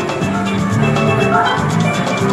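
Video slot machine's free-spin bonus music: a bright tune of held melodic notes over a steady beat, playing while the reels spin.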